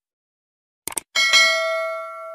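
Subscribe-button animation sound effects: a quick double mouse click just before a second in, then a bell ding struck twice in quick succession that rings on and slowly fades.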